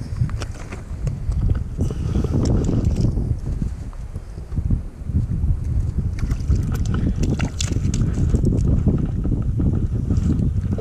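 Wind buffeting the microphone, an uneven low rumble, with scattered sharp clicks, most of them between about six and eight seconds in.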